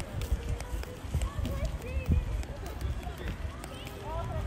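Faint, distant voices of children calling and chattering outdoors, over a steady wind rumble on the microphone and the uneven thuds of a person walking with the camera.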